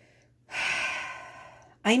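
A woman's long, breathy sigh that starts suddenly about half a second in and fades away over about a second.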